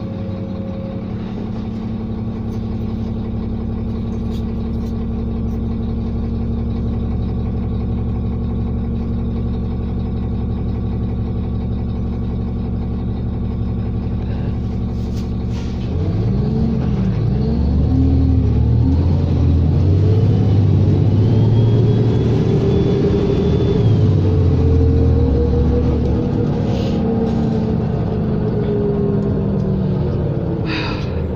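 Diesel engine of a 2003 New Flyer D40LF city bus heard from inside the passenger cabin, running steadily at first. About halfway through it revs up as the bus pulls away, the pitch climbing and dipping as it shifts gears, with a whine that rises and then falls off near the end.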